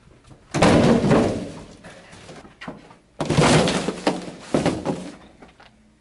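A stack of empty cardboard boxes crashing and tumbling to the floor as a person runs into it: two loud crashes, the first about half a second in and the second about three seconds in, each rattling on for a second or two.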